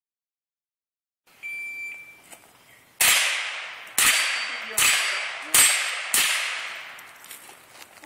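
A shot timer's start beep, then five .22 rimfire shots fired in quick succession over about three seconds, each followed by an echoing tail.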